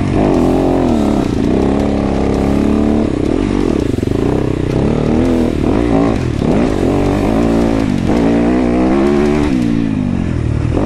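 Dirt bike engine revving up and down as the bike is ridden along a trail. Its pitch rises and falls repeatedly with the throttle and gear changes.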